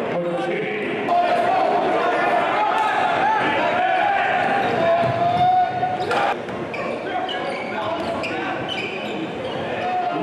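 Live basketball game sound in an echoing gym: the ball bouncing, sneakers squeaking and players and spectators shouting. A sharp bang at about six seconds in fits a dunk hitting the rim.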